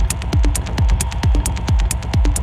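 Techno music: a deep kick drum on every beat at about 130 beats a minute, each kick dropping in pitch, with crisp hi-hats between the kicks and a steady tone held underneath.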